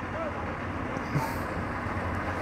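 Steady low hum of an idling vehicle engine, with faint distant voices.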